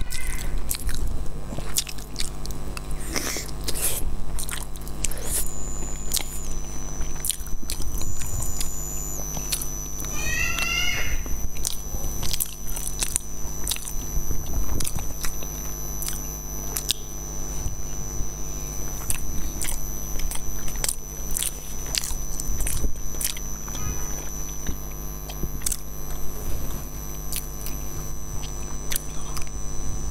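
Close-miked eating sounds of a sticky black rice cake: chewing, biting and wet mouth clicks and smacks repeating throughout. A steady low hum and a faint high-pitched whine run underneath.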